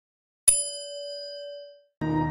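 A single notification-bell chime sound effect: one struck ding about half a second in, ringing on a steady pitch and fading out over about a second.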